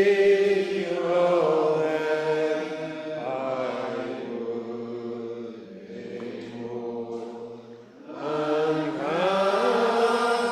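A congregation singing a metrical psalm unaccompanied, in slow, long-held notes. The singing thins out through the middle and swells again about eight seconds in as the next line begins.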